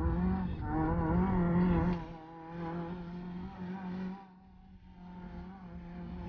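Fiat Seicento rally car's engine heard from inside the cabin, revving hard with the pitch rising and falling as the car is driven through a bend. The engine note drops after about two seconds and again after about four as the driver comes off the throttle, then picks up slightly.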